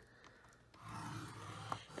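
Faint scraping of a scoring stylus on heavyweight kraft cardstock laid on a scoring board, starting just under a second in.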